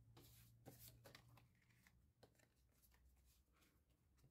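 Near silence, with faint short rustles and ticks of cardstock being handled and slid across a craft mat.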